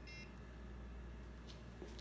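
A short electronic beep from the Warthog wireless bicycle brake light at the start, as its button is pressed to switch it on. Then faint steady hum and a couple of light ticks.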